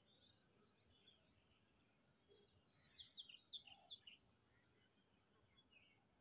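Faint bird chirps, with a quick run of short falling chirps about halfway through.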